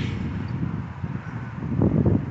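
Wind buffeting the microphone: an uneven low rumble with a faint hiss above it.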